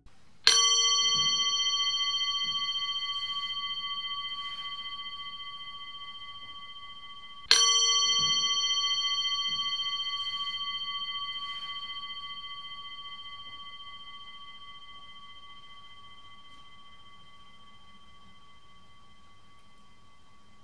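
A meditation bell struck twice, about seven seconds apart; each stroke starts sharply, rings with several clear high tones, and fades away slowly.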